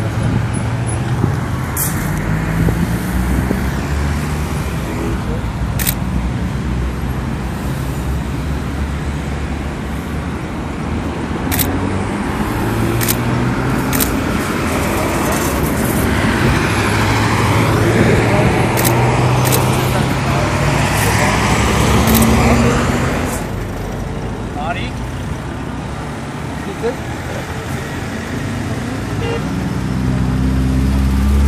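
Road traffic passing on a busy highway, with people talking over it. A vehicle swells louder past the microphone in the middle and fades out about two-thirds of the way through.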